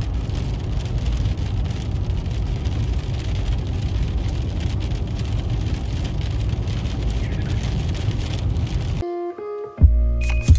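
Hail pelting a moving car's windshield and roof, heard inside the cabin as a dense patter of small hits over a steady rumble of road noise. It cuts off suddenly about nine seconds in, where music starts.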